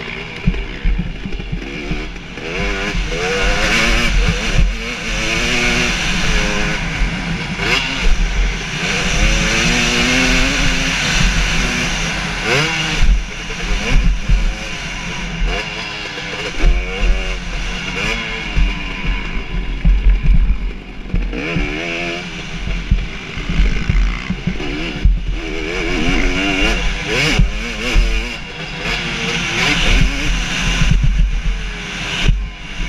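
2017 KTM 250 SX two-stroke motocross bike's engine, heard from the bike's onboard camera, revving hard and dropping back again and again as it is ridden flat out around the track.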